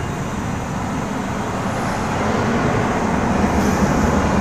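Steady low rumble of street traffic noise, getting a little louder in the second half.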